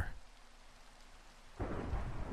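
Ambient rain-and-thunder sound bed, very faint at first; about one and a half seconds in, a low rumble of thunder swells up.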